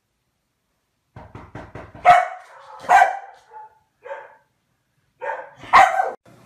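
A dog barking: a quick run of short sounds about a second in, then about five barks spaced roughly a second apart, the loudest near the start and the end.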